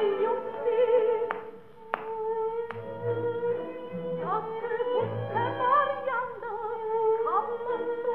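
A 1931 operatic recording of singing with orchestra, played from a 78 rpm shellac record through an EMG Mark Xb acoustic gramophone with a Meltrope III soundbox. The sound is narrow and thin-topped, with a few sharp clicks in the first three seconds.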